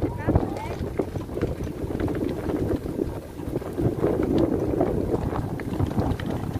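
Wind blowing across the microphone in the open, a fluctuating low rumble, with faint voices under it.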